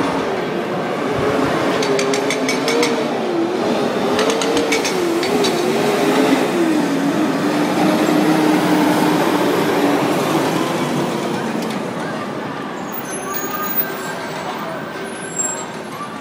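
Soundtrack of a video of a street protest action, played back over the room's speakers: a dense wash of outdoor noise, with a wavering pitched sound over the first two-thirds and a few short high tones near the end.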